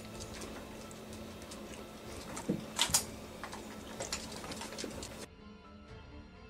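Scattered clicks and a couple of sharper knocks from people eating and handling burgers and boxes at a table, over a faint steady hum. A little after five seconds the room sound cuts off and quiet background music takes over.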